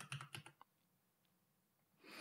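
A few faint, quick computer keyboard keystrokes, all within the first half second.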